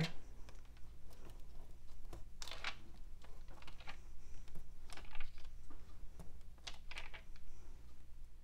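Faint rustling and crinkling of freezer paper as stiff, waxed cotton candle wicks are peeled off it and set down, with a few soft ticks scattered through.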